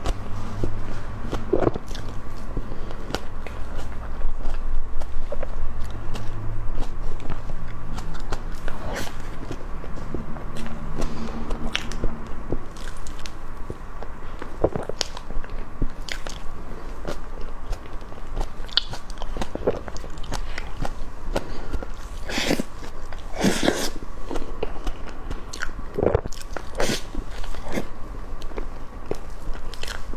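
Close-miked chewing of a cream cake with green grapes: wet mouth smacks and many short, sharp clicks, over a faint steady hum.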